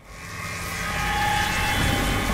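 A swelling whoosh sound effect for a logo reveal: it starts suddenly, grows over about a second into a steady loud rush, and carries a faint high held tone.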